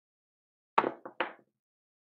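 Dice thrown onto a craps table, landing with three quick clattering hits about a second in.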